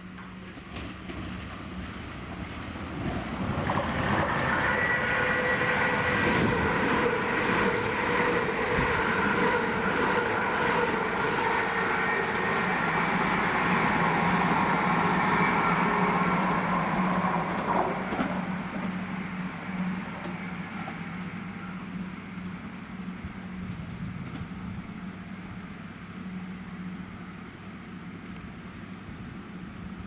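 Greater Anglia Class 379 electric multiple unit running into the platform. Wheel-on-rail noise with a whine of several steady tones builds about three seconds in and stays loud for some fifteen seconds. It then eases to a steady low hum as the train slows.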